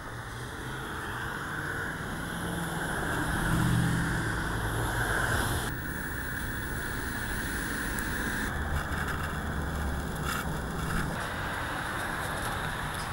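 Road traffic passing on a busy street: a steady wash of car and tyre noise with a low engine drone, changing abruptly twice as the location sound is cut between shots.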